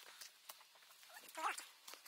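Footsteps on a rocky trail, a few sharp steps on stone, with a short voice sound about one and a half seconds in.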